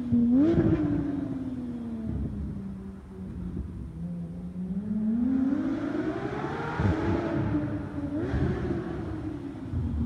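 Porsche 911 GT3 flat-six with an IPE exhaust revving and driving: a quick rev blip right at the start, pitch sinking as it eases off, then a long rising pull from about four seconds to seven, another short blip a little after eight seconds, and sinking again.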